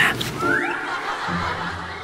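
A man's short snicker.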